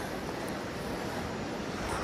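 Steady, even background noise with no distinct sounds in it.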